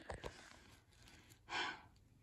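A few soft handling knocks at the start, then a short, sharp intake of breath, a gasp, about one and a half seconds in.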